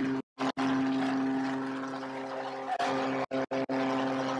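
An arena goal horn sounds one long, steady blast over a cheering crowd, marking a home goal. The sound cuts out briefly near the start and a few times just after three seconds in.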